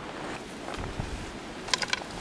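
Wind buffeting the microphone over flowing river water, with a low rumble from about a second in. A quick run of sharp clicks comes near the end.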